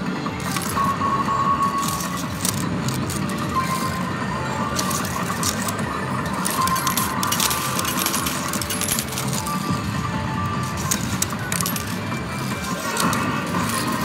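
Metal medals clinking and dropping in an arcade medal-pusher machine, over the machine's electronic music and jingles.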